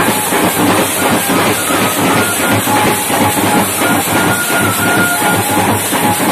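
A street drum band of strap-slung, metal-shelled side drums and bass drums beaten with sticks in a fast, dense, continuous rhythm. A few high held tones sound faintly above the drumming.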